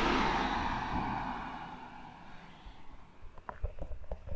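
A car passing on a narrow country lane: its tyre and engine noise is loudest at the start and fades away over about two seconds. A few faint knocks follow near the end.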